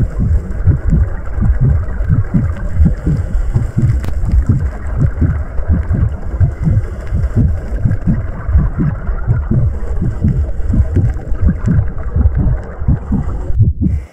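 Underwater camera sound of a scuba diver's exhaled bubbles: a loud low rumble full of short, irregular bubbling pulses. It cuts off just before the end.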